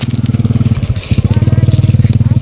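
A small engine running steadily close by, its rapid, even firing pulses dipping briefly about a second in.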